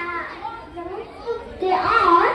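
A girl speaking into a handheld microphone.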